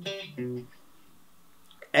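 Clean-toned electric guitar picking two short single notes of a minor-key riff, then about a second of near quiet before a voice comes in at the very end.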